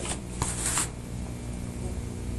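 Steady low hum and hiss of a recorded conversation in a pause, with a brief rustle about half a second in.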